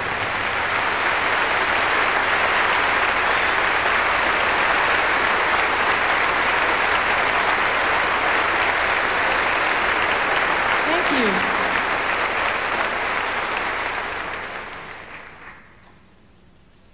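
Concert hall audience applauding: a steady, dense wash of clapping that fades away over the last two seconds.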